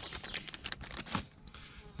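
Light crackling and a run of small ticks and taps from handling a plastic container full of dry groundbait powder, busier in the first second with one slightly louder tap about a second in.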